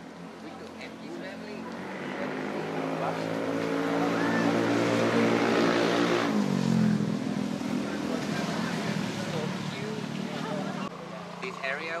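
A motor vehicle drives past close by. Its engine note grows louder as it approaches, drops in pitch as it passes about six seconds in, then fades into tyre and road noise.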